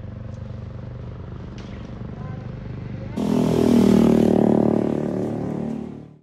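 Road traffic noise: a motor vehicle engine runs steadily, then about three seconds in a much louder engine sound comes in with voices, and it all fades out at the very end.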